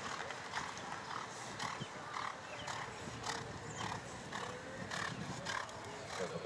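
A horse's hooves striking the sand arena footing at a canter, a dull beat about every half second.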